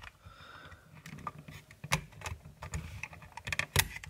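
Small irregular plastic clicks and scrapes as a spudger pries at a pegged tab on a plastic toy figure's panel, over faint handling noise. A sharper click just before the end as the tab pops loose.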